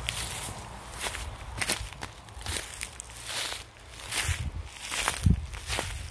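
Footsteps walking over grass and dry leaf litter, a series of short rustling steps at an even walking pace.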